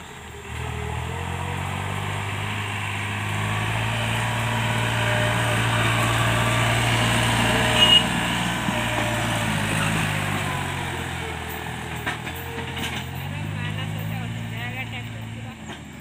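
New Holland 3630 tractor's three-cylinder diesel engine running steadily under load as it pulls a loaded trolley, growing louder as it passes close around the middle and then fading. A brief high squeal rises just before the halfway point.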